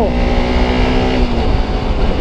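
Sport motorcycle engine running steadily at cruising speed, with wind and road rush on the rider-mounted camera; the steady engine note eases off about a second and a half in.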